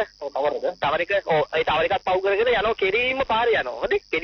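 Speech only: a person talking continuously, with brief pauses between phrases.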